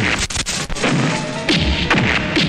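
Dubbed fight-scene sound effects: several sharp punch and kick whacks landing, over background film music.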